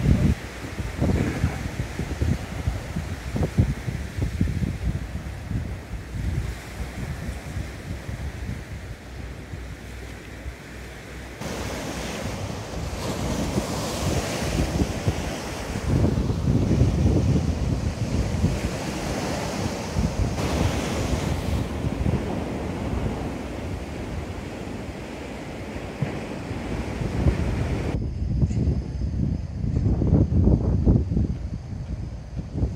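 Sea waves breaking and washing up the shore, with wind buffeting the microphone in gusts. The surf grows louder about twelve seconds in and cuts off shortly before the end.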